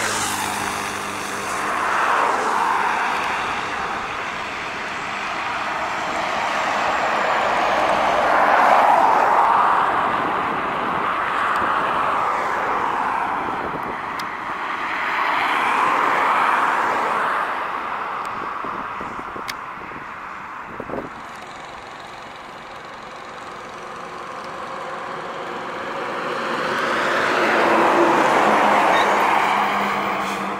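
Heavy diesel trucks passing one after another on a highway, engine and tyre noise swelling as each approaches and fading as it goes by; the loudest passes come about two, nine, sixteen and twenty-eight seconds in.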